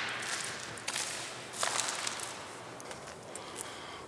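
Footsteps on a gravel road strewn with dry leaves, with a few sharper steps about one and a half seconds in and a hiss that slowly fades.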